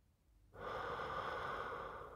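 A person's long, deep in-breath, starting about half a second in and lasting almost two seconds.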